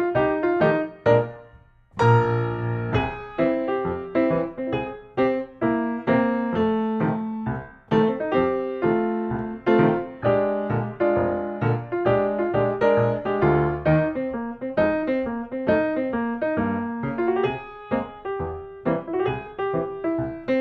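Ragtime piano music at a lively, even beat, with a brief break just before two seconds in, after which the playing picks up again.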